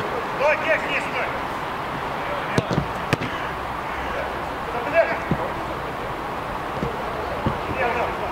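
Outdoor football match: players' short shouts on the pitch, with two sharp ball kicks about two and a half and three seconds in, over a steady background hiss of the open ground.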